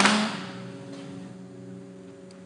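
Soft background music score of sustained, held tones fading lower, with the tail end of a woman's spoken line at the very start.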